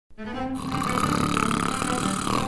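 A man snoring: one long snore that starts about half a second in and carries on to the end, over background music with low held notes.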